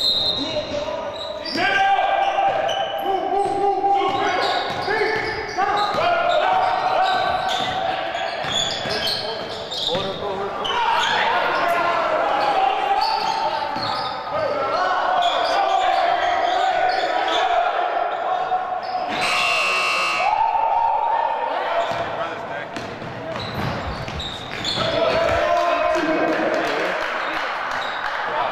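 Basketball bouncing on a hardwood gym floor during play, echoing in a large hall, over voices and held pitched tones. A brief high, buzzing sound comes about three quarters of the way through.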